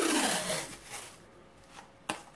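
Masking tape being pulled off its roll, a rasping peel that fades out about a second in.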